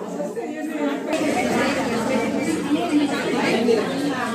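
Chatter of a group of women talking over one another, getting louder and fuller about a second in.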